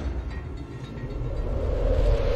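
Low synthesized rumble from an animated logo intro's sound design, dipping about halfway through and then swelling again toward the end.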